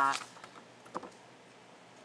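A woman's drawn-out "uh" trailing off, then a quiet pause with a couple of faint short clicks, about half a second and a second in.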